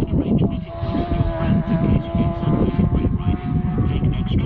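A Superstock racing motorcycle holding a steady high engine note that weakens as it draws away, under heavy wind buffeting on the microphone.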